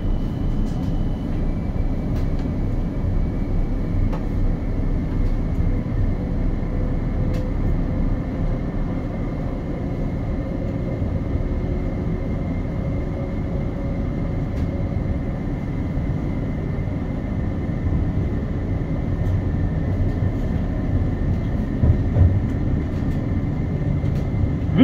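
Light rail tram heard from inside the carriage while running between stops: a steady low rumble of wheels on rail with a faint, steady high whine. A few light knocks come near the end.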